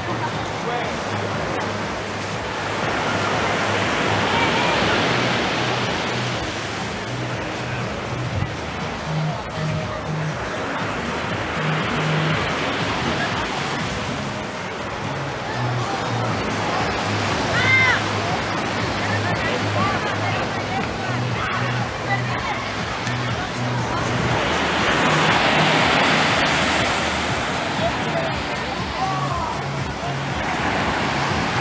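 Surf washing onto the beach, swelling and fading every several seconds, with background music's bass line playing under it.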